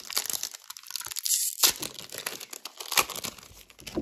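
Foil wrapper of a Pokémon Brilliant Stars booster pack being torn open and crinkled by hand, the loudest tear about a second in, the crackling dying down near the end.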